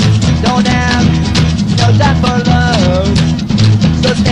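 Punk rock demo recording with electric guitar, bass and drum kit playing a steady beat, and a pitched melody line bending and gliding over the top.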